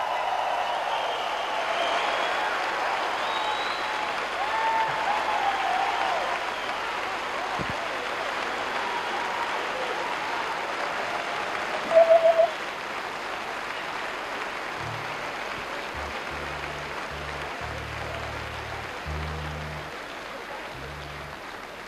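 Concert audience applauding and cheering after a song, with whistles, the applause slowly dying away. A short warbling whistle about twelve seconds in is the loudest moment, and a few low held notes sound near the end.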